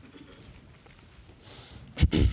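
Faint rustle of thin Bible pages being turned, strongest near the end, over a low room hum.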